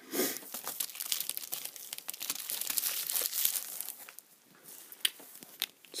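Plastic packaging crinkling and rustling as toy figure parts are unwrapped, dense for about four seconds, then a few light clicks and rustles.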